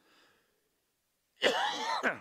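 A man coughs once near the end, a single harsh cough lasting about half a second.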